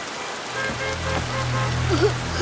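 Heavy rain falling, with soundtrack music under it: low held tones come in about half a second in, with a few faint higher notes.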